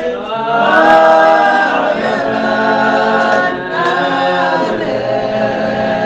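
A group of Spiritual Baptist worshippers singing a hymn unaccompanied, in slow, long-held notes.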